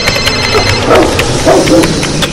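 A loud, cluttered mix of everyday noise: a ringing telephone that stops under a second in, a dog barking twice, and clattering and background hubbub.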